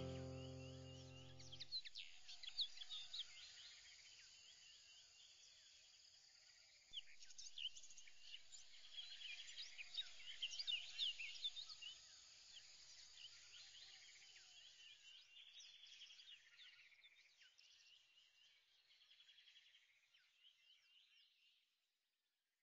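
A music chord fading out over the first two seconds, then faint birdsong: many quick, high chirps that thin out and fade away near the end.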